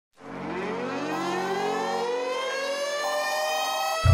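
A siren-like rising intro sound: several tones climbing slowly and steadily in pitch together, over a low steady drone that drops out about halfway through.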